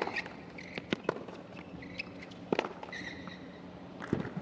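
Tennis ball struck by rackets in a rally on a hard court: a few sharp hits about a second or more apart, with short high-pitched sneaker squeaks between them.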